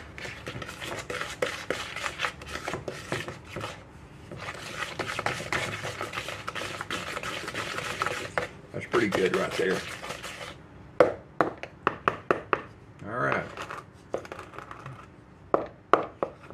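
A wooden spoon scraping and stirring thick batter in a mixing bowl, a dense run of scrapes and small knocks, followed by a few sharp taps against the bowl.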